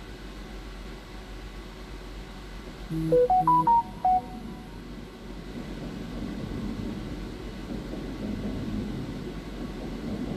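Smartphone notification chime, a short melody of a few notes about three seconds in that rises and then falls back, signalling a motion alert from a garage security camera.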